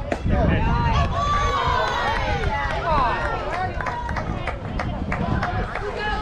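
A bat striking the ball with one sharp crack, followed at once by many voices cheering and shouting over each other, loudest in the first few seconds. Scattered sharp claps and calls go on after.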